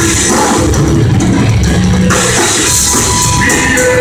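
Metal band playing live and loud: electric guitar, bass guitar and drum kit with cymbals, played steadily.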